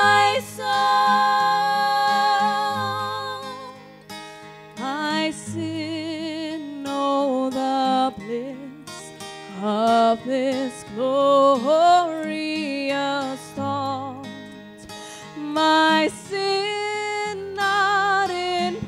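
Women singing a hymn in held notes with vibrato, accompanied by a strummed acoustic guitar.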